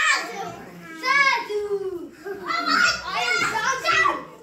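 Young children's voices as they play: high-pitched calls and chatter from several kids, some with pitch that slides up and down.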